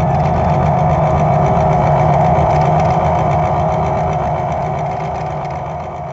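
The ending of a rock song: a steady, gritty, droning sustained chord that slowly fades out over the last couple of seconds.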